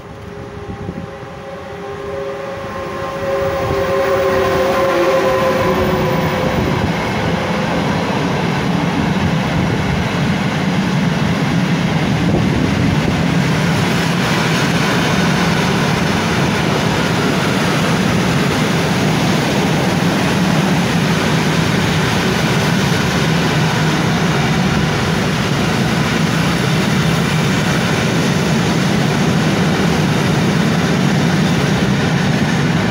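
A Newag Gama 111Ed electric locomotive passes close by, its traction motors whining on a few steady, slightly falling tones for the first few seconds. Then the mixed freight train of side-dump and hopper wagons rolls past in a loud, steady rumble of wheels on rails.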